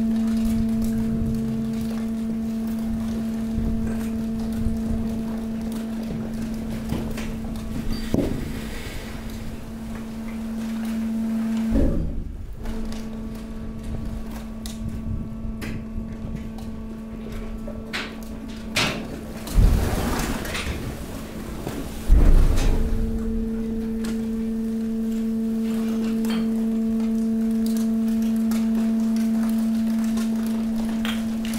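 Hydraulic waste compactor pressing mixed waste into a container: the hydraulic power unit hums with a steady tone while a few heavy thumps come in the middle, the loudest about two-thirds through, as the load is shoved and crushed.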